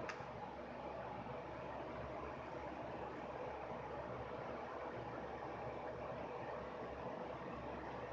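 Faint, steady room tone: an even background hiss with no distinct events, apart from one small click right at the start.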